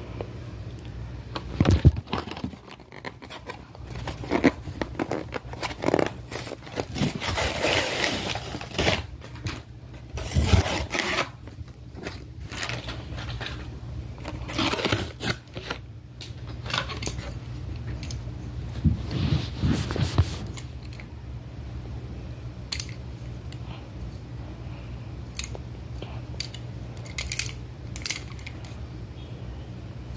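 A die-cast toy car's plastic blister pack and cardboard backing card being torn open by hand: irregular crackling, scraping and tearing, growing sparser in the last third.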